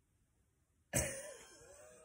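Near silence, then a woman coughs once about a second in, the sound trailing off.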